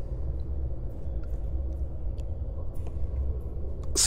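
A steady low rumble of background ambience, with a few faint scattered clicks over it.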